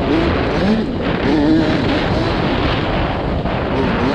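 Youth dirt bike engine heard from an onboard camera, revving up and down in pitch as the bike is ridden around a dirt motocross track, over a steady rush of noise.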